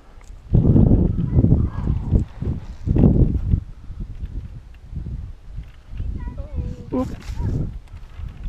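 Wind gusting over the microphone on an exposed hilltop, coming in loud rumbling blasts, strongest about half a second in and again around three seconds. A short pitched sound, a call or a voice, comes near the end.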